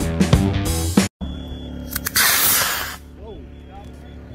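Rock music for about a second, then a cut to the launch site, where a Quest D20-4W Q-Jet model rocket motor ignites about two seconds in with a loud rushing hiss lasting about a second. The hiss drops away as the rocket climbs, leaving a quieter steady background.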